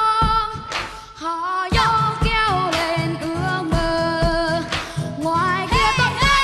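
A child singing into a microphone over an upbeat band accompaniment with a steady drum beat, the voice holding notes with vibrato.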